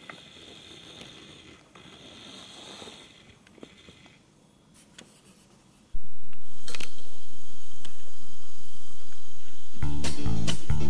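Faint fizzing of an effervescent tablet dissolving in a glass of coloured water under a layer of oil, with carbon dioxide bubbles rising and popping at the surface. Near the end, guitar music starts abruptly.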